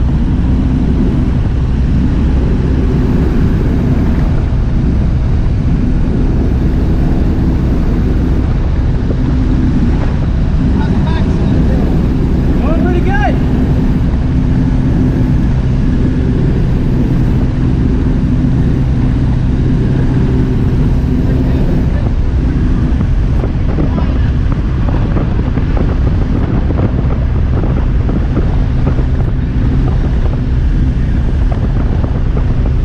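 Light aircraft's engine and propeller droning steadily, heard from inside the cabin, with wind noise over it.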